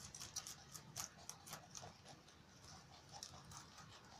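Rabbits biting and chewing fresh leafy greens: faint, irregular crisp clicks of nibbling, quickest in the first two seconds and sparser after that.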